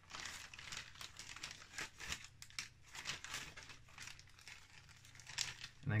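Clear plastic packaging crinkling and rustling in irregular bursts as sheets of static-grass tufts are handled and taken out.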